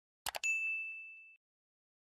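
A quick double mouse-click sound effect, then one bright bell ding that rings for about a second: the notification-bell sound of a subscribe-button animation.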